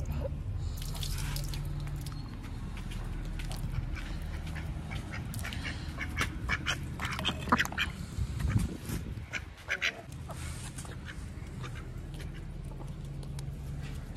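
Muscovy ducks drinking and dabbling with their bills in a clay bowl of water, giving a run of quick splashy clicks and short calls, densest between about five and ten seconds in, over a steady low hum.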